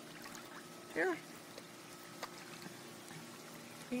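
Faint trickling and lapping of swimming-pool water, over a steady low hum, with a few small ticks.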